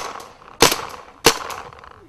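Paintball marker firing two sharp shots about two-thirds of a second apart, each fading quickly.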